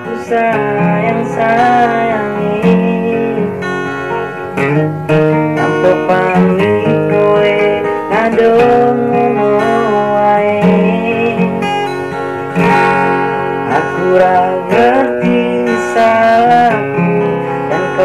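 A man singing an Indonesian pop ballad in a slow melody, accompanied by his own strummed acoustic guitar.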